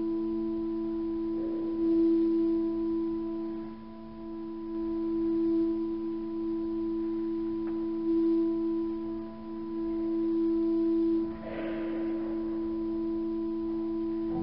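Pipe organ holding a long, soft sustained chord that swells and eases in loudness several times, ringing in a large reverberant church.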